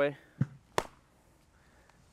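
A baseball smacks into a Rawlings Sandlot Series leather glove's pocket with one sharp pop just under a second in, after a short dull thump. The ball pops back out of the pocket.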